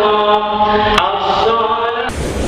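Islamic devotional chanting, a melody sung in long held notes that step from pitch to pitch, with a brief click about a second in.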